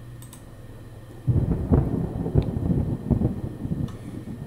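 Thunder sound effect from a video intro, played through the computer. A faint click, then about a second in a thunderclap breaks into a rolling series of irregular low cracks that dies away near the end.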